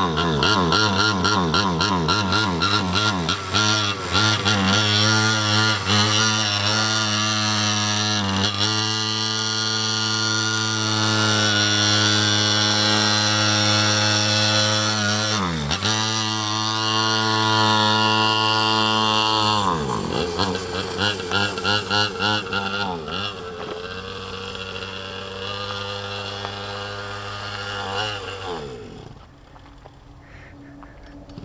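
Mini quad's small engine revving hard and holding high revs, with quick drops and climbs in pitch as the throttle is closed and opened again about 8, 16 and 20 seconds in. After that it runs lower and quieter, and falls away near the end.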